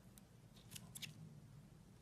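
A few faint, quick metallic clicks of surgical forceps and a clamp working in a small hand incision, the loudest cluster about a second in, over a low steady hum.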